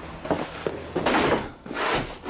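Handling noise: the camera rubbing against clothing as it is carried, with two louder scraping swells about a second in and near the end.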